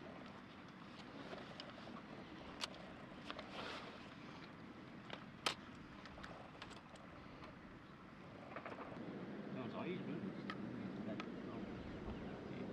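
Faint outdoor background with low, indistinct voices and a few short, sharp clicks, the loudest about five and a half seconds in; the background grows a little louder after about eight and a half seconds.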